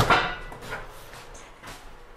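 Countertop toaster-oven door shutting with a sharp clack and a brief metallic ring, then a softer knock near the end.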